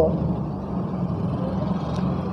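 Steady background noise with a low rumble, unchanging through the pause in speech.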